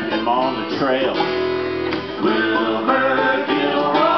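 Acoustic string band playing: strummed acoustic guitars with mandolin and fiddle, at a steady, full level.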